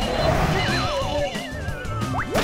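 Cartoon soundtrack: background music with a comic sound effect of two wavering, falling whistle-like glides, the first starting about half a second in and dropping quickly, the second sliding down more slowly toward the end.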